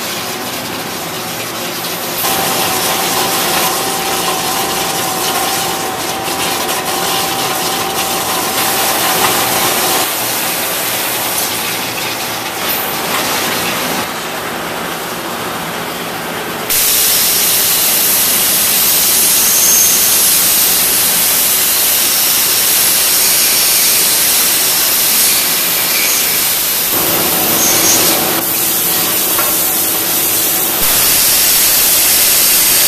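Automated machining cell running with a steady mechanical hiss and, for several seconds early on, a faint steady whine. A little past halfway a louder, even compressed-air hiss starts and keeps going: air from an EXAIR unit blowing excess oil off a machined part for mist collection.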